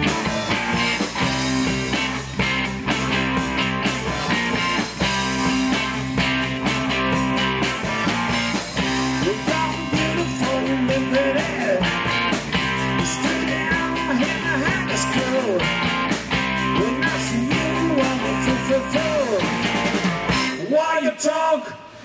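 Live rock-and-roll band playing an instrumental passage: electric guitars over bass and drums, with a lead guitar bending notes. Near the end the bass and drums cut out for a brief break.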